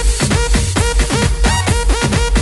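Background electronic dance music with a fast, steady beat, heavy bass and a repeating synth note that slides down on each beat.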